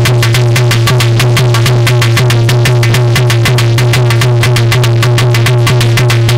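Loud instrumental folk music: a dholak hand drum struck in a fast, even rhythm of about six strokes a second, over a steady low drone and a sustained melody line.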